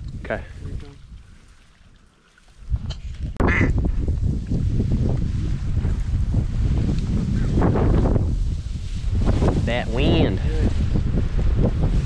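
A duck call blown in two runs of quacking, the second near the end, to turn a circling duck back toward the blind. From about three seconds in, heavy wind rumble on the microphone runs under it.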